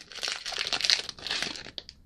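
Foil trading-card pack wrapper crinkling as it is handled and pulled open, a dense crackle that thins out near the end.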